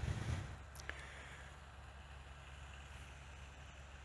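Quiet outdoor background: a faint steady low rumble with light hiss, and a couple of small clicks about a second in.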